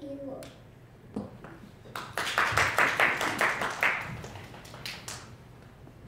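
Audience clapping, a short round of applause that starts about two seconds in and dies away after about three seconds.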